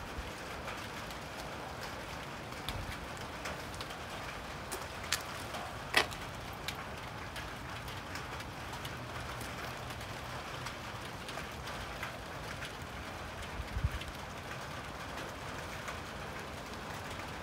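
Light rain falling: a steady soft patter with a few sharper drop ticks, the loudest about six seconds in.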